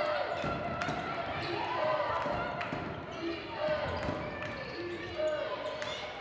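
Basketball bouncing on a hardwood gym floor as players dribble, with voices calling out in the hall.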